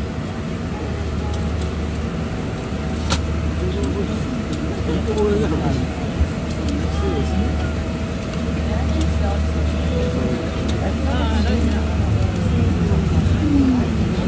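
Airliner cabin noise: a steady low rumble, with faint voices and a single sharp click about three seconds in.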